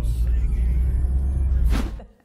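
Steady low road-and-engine rumble inside a moving car's cabin, with a brief rush of noise near the end.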